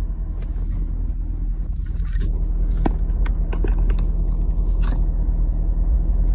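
Car engine idling with a steady low rumble through its Corsa aftermarket exhaust, heard from inside the cabin, with scattered light clicks and knocks over it.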